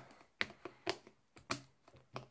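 Plastic back cover of a Microsoft Lumia 950 XL being pressed onto the phone, clipping into place with four sharp snaps about half a second apart.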